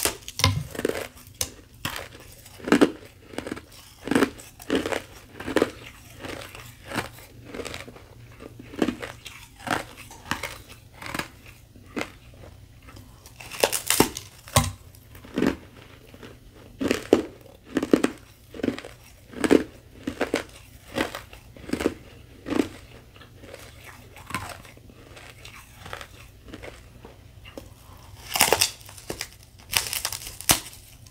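A thin sheet of carbonated ice topped with powdery frost being bitten and chewed: a steady run of crisp crunches, one or two a second, with a few louder bites snapping off pieces about halfway through and near the end.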